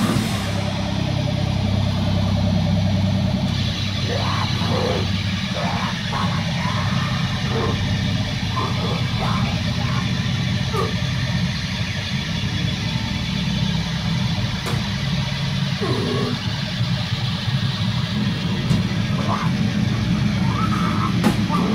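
A loud metal band cuts out just after the start, leaving a steady low droning hum and noise from the stage amplifiers. Several short shouted voices come over the drone.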